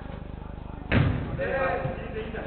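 A football kicked hard: one sharp thud about a second in, echoing in the large indoor hall, followed at once by players shouting.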